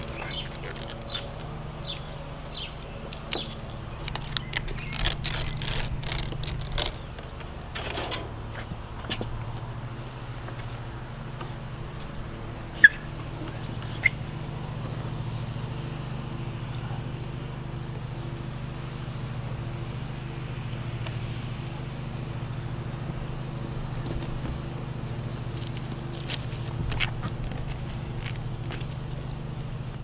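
Butyl sealant tape being worked off its roll and pressed onto a plastic roof-fan flange: crinkling, tearing and clicking handling noises over the first several seconds, above a steady low hum. Two short high chirps come midway.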